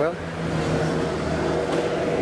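Steady, kind of loud engine drone from street maintenance machines, a low even hum with no rise or fall.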